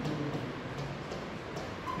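A man's low, drawn-out voiced hum, a hesitation between words, over quiet classroom room tone.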